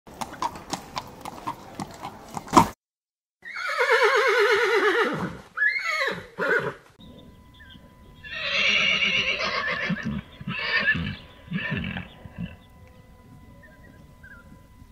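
Horse neighing: a long, wavering whinny that falls in pitch, a couple of short calls, then a second long whinny and two shorter ones. Before the whinnies, a quick run of sharp knocks like hoofbeats, ending in one louder knock.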